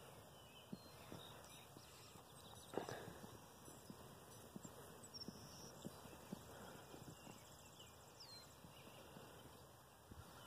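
Near silence: faint outdoor background with scattered soft clicks and one louder knock just before three seconds in.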